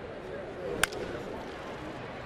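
A single sharp crack of a bat hitting a baseball, a little under a second in, over the steady noise of a ballpark crowd.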